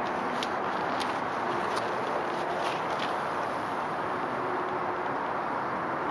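Steady outdoor background noise, with a few faint taps in the first three seconds.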